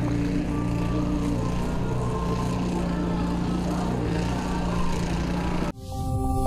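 A steady, even hum of running engines, a low drone with no change in pitch, that cuts off abruptly near the end.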